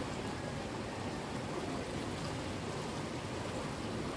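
Steady, even outdoor noise with no distinct events.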